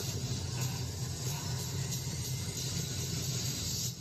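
A steady, low rumbling drone with a hiss over it, from a horror trailer's soundtrack played back through a speaker. It drops away suddenly at the end.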